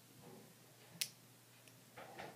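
A single sharp click about a second in, from small parts of an X-Acto craft knife being handled and snapped together, in an otherwise quiet room.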